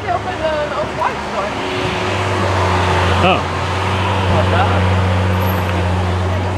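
A Lamborghini Aventador SVJ's V12 engine running with a steady low rumble as the car rolls slowly past at low revs. Voices of people talking come and go over it.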